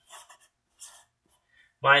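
Sharpie felt-tip marker writing on paper: a few short, faint scratching strokes with brief gaps between them.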